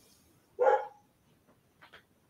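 A dog barks once, a short single bark, followed by a few faint clicks near the end.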